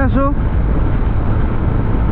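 Steady rush of wind and road noise from a motorcycle cruising at highway speed, heaviest in the low end, with no distinct engine note standing out.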